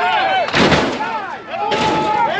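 Hydraulic lowrider hopping: two loud bangs about a second apart as the car's front end comes down and hops back up. A crowd yells and whoops over them.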